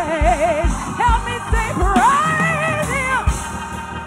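A woman singing gospel solo into a microphone, with wide vibrato and sliding runs, over accompaniment with a steady low beat.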